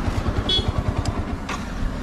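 A motorcycle engine idling: a steady, even low pulsing, with a brief high squeak about a quarter of the way in.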